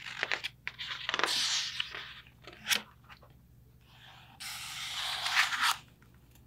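Pages of a picture book being handled and turned: paper rustling in several short bursts, with a single sharp click about halfway through and a longer rustle near the end.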